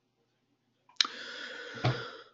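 A sharp click about halfway through, followed by about a second of steady hiss, with a short knock near the end.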